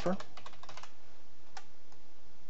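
Typing on a computer keyboard: a quick run of keystrokes in the first second, then a couple of single clicks.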